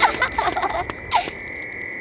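Cartoon magic sparkle sound effect: high bell-like chime tones ringing steadily over background music, with a flurry of quick glittering notes at the start.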